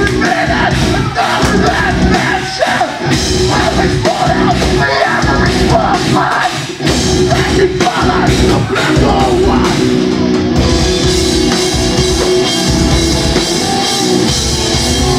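Live hardcore/partycore band playing loud, with distorted electric guitar, drum kit and a vocalist yelling into the microphone. About ten seconds in, the sound grows brighter and fuller in the top end.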